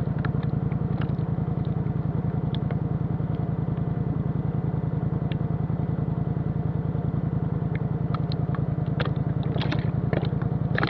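Off-road vehicle's engine idling steadily, with a few light clicks and rattles scattered through, most of them near the end.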